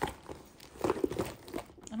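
A book being pushed into a quilted leather flap handbag: rustling and rubbing of the cover against the leather, with a sharp click at the start and a cluster of short knocks and scrapes about a second in.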